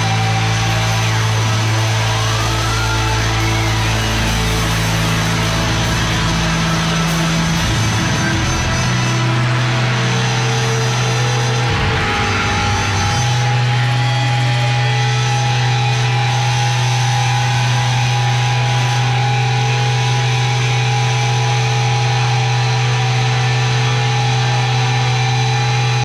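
Live rock band letting a song ring out at the end: sustained electric guitar drone and feedback over a held low note that shifts pitch about seven and thirteen seconds in.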